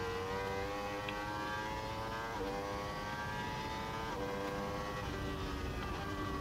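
Racing motorcycle engine heard onboard, its note sinking slowly, with two brief steps up in pitch about two and four seconds in.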